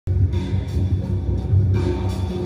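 Two electric guitars playing together, one a Telecaster-style guitar and the other played with a brass slide, starting abruptly and carrying on steadily with a full low end.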